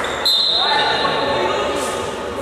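Players' voices shouting and ball thuds ring around an indoor sports hall during a futsal game. About a quarter second in, a brief high steady tone, like a whistle, cuts in and fades.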